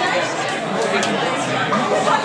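Crowd chatter: many people talking at once, their overlapping voices blending into a steady hubbub.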